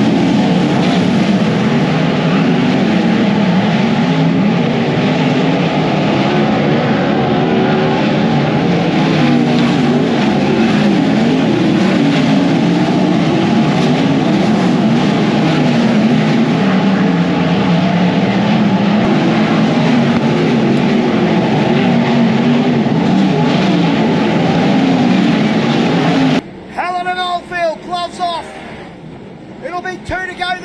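A pack of non-wing sprint cars racing on a dirt oval, their V8 engines running hard at close range in a loud, dense, wavering drone. It cuts off suddenly near the end and gives way to a man's voice over quieter engine sound.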